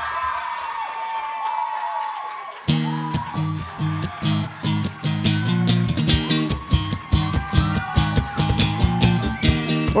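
An acoustic-electric guitar and a cajon break into a driving, rhythmic vamp about two and a half seconds in. Before that, a held, wavering tone sounds over a haze.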